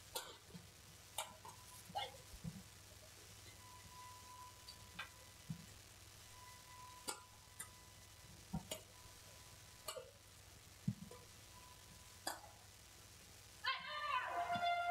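Badminton rackets striking the shuttlecock during a rally: a string of short, sharp hits at irregular spacing, about a second apart.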